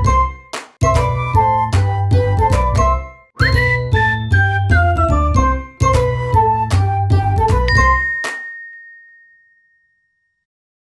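Upbeat intro jingle: a bell-like melody over a bass line and sharp percussion hits, in short phrases. About eight seconds in the music stops, leaving one high bell note ringing out and fading away.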